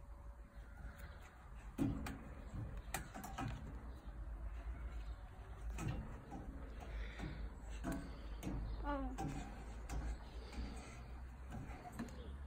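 Faint, indistinct voices and a few scattered knocks over a steady low rumble.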